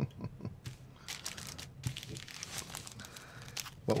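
Fly-tying material being handled off-camera: crinkling and rustling in short irregular bursts, with a few light clicks.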